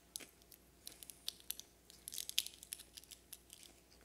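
Faint, irregular crackles, crinkles and crunches close to the microphone, densest in the middle: communion bread being eaten and its small packaging being handled.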